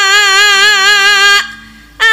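A Javanese sinden (female gamelan singer) holds one long sung note with a steady vibrato, breaking off about a second and a half in. A faint low held tone lingers after it, and she starts a new note right at the end.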